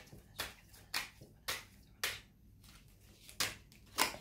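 A deck of tarot cards handled and shuffled by hand, giving a string of sharp, light card slaps about every half second, with a short pause in the middle.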